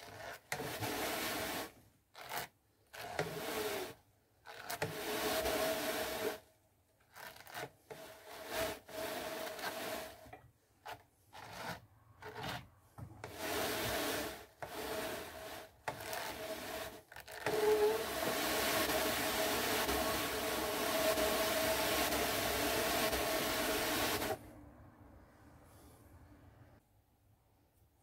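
Drum carder's carding cloth rasping through bison-blend fibre as the drums turn, a second pass to blend the batt. It comes in short spells with gaps, then a longer steady run that stops abruptly near the end.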